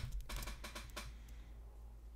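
Faint, rapid clicking of a computer keyboard through about the first second, then only a low steady hum.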